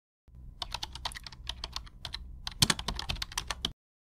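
Computer-keyboard typing sound effect: a rapid run of key clicks, a short pause about two seconds in, then a second run that stops abruptly near the end.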